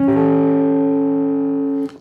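Clean electric guitar sounding one chord of a few notes, an A7 voicing built from root, seventh and third, which is struck once and left to ring. It is muted sharply just before the end.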